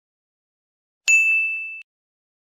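A single bright ding, a bell-like notification sound effect, about a second in. It rings on one clear tone as it fades, then cuts off suddenly.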